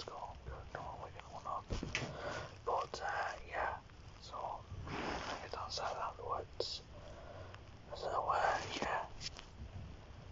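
A person whispering, in breathy, unvoiced speech, a little louder near the end.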